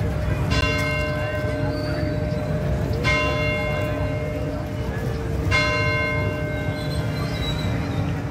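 Ghanta Ghar clock tower bell striking three times, about two and a half seconds apart, each strike ringing on with several tones as it fades, over steady street noise.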